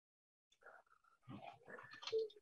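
Near silence: the sound drops out completely at first, then a few faint, brief sounds come in the second half.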